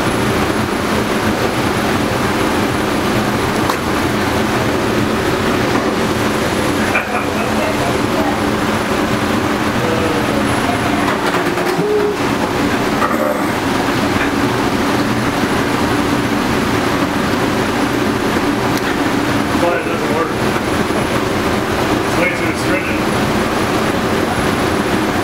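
Steady, loud drone of a commercial kitchen's exhaust hood fan running, an even rumble with a low hum that does not let up, with faint muffled vocal sounds from the person now and then.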